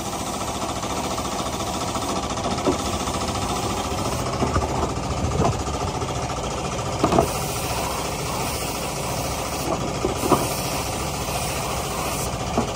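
Compressed-air paint spray gun hissing as it sprays a machine head, over a steady mechanical drone, with a few irregular knocks.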